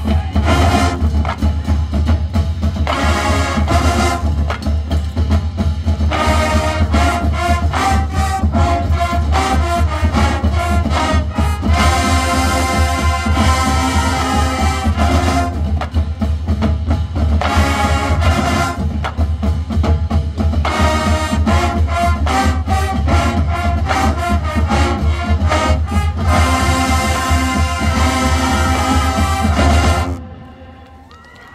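College marching band playing a stands tune at full volume: brass section over a drumline with bass drums, stopping abruptly at the end.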